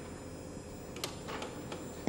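A film camera's controls being handled: a few scattered clicks, the first about halfway through, over a steady background hum.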